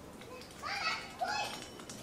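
Children's voices: two short high-pitched calls or words in the middle, over a faint background hum.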